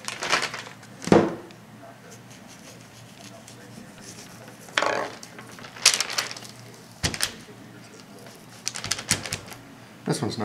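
Scattered knocks, taps and short rustles of hands, a small knife and butcher paper as a deer hind quarter is handled and cut on a paper-covered wooden table. The loudest knock comes about a second in, with clusters of clicks and rustles later on.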